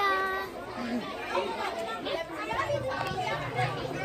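Speech only: several girls' voices chattering over one another, with one voice holding a drawn-out call at the start.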